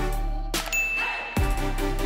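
A single bright ding sound effect from an on-screen subscribe and notification-bell animation, ringing for about half a second in a brief break of electronic background music. The music comes back in with a drum hit after the ding.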